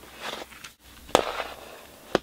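Plastic CD jewel cases handled on a tabletop: a soft rustle, then one sharp plastic clack a little past halfway as a case is set down.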